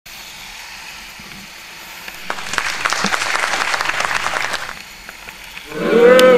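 Rain and spray pattering against the windscreen of a vehicle on a wet road: a steady hiss, then a dense spatter of small hits for about two and a half seconds in the middle that fades back to hiss. A pitched sound begins right at the end.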